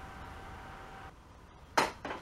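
Plate-loaded dumbbells knocking once near the end, a sharp metallic clink of the iron plates. Before it a faint steady hum cuts out about a second in.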